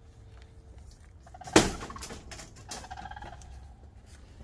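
A sharp knock about a second and a half in, the loudest sound. Short pitched bird calls come just before it and again a second or so later.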